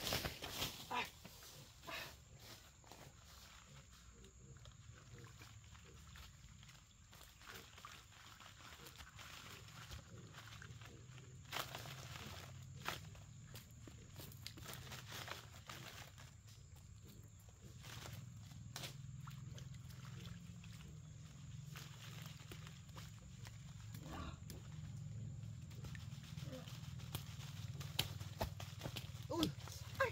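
Leafy branches rustling in short, scattered bursts as they are shaken over a basin of water, over a steady low hum that grows stronger in the second half.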